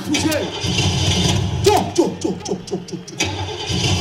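An imitated car engine spluttering and cranking as it fails to start, a low rumbling sound played over the stage PA with voices over it. It mimics an old jalopy that will not start; it pauses briefly near the end and then resumes.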